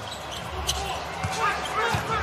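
Basketball being dribbled on a hardwood court: a few sharp bounces about half a second apart.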